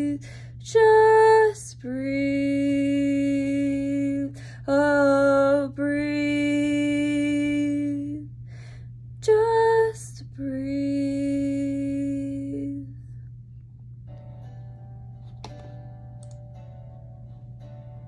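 A woman's solo voice holding six long wordless sung notes, short higher ones alternating with longer lower ones, which end about thirteen seconds in. After that only faint guitar music is heard.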